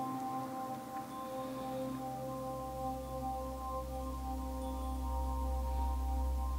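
Ambient background music of sustained, bell-like drone tones, with a deep bass swelling in about two and a half seconds in.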